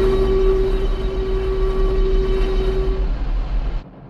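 Steady machine drone with a heavy low rumble and a held hum over it, a sound effect for the animated excavator running. The hum fades out about three seconds in, and the whole drone cuts off suddenly just before the end.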